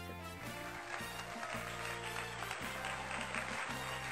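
Background music: sustained bass notes changing about once a second, with a bright shimmering upper layer that builds from about a second in.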